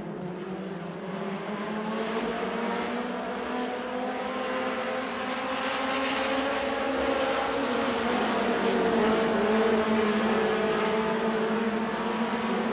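Several dirt-track mini stock race cars' engines running together as the pack circles the oval: a steady blend of engine notes that slowly drifts up and down in pitch, growing a little louder over the first several seconds.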